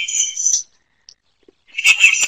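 Garbled, high-pitched, chirping audio from a poor online-meeting connection: a participant's voice broken up by the transmission. It cuts out for about a second midway, then returns.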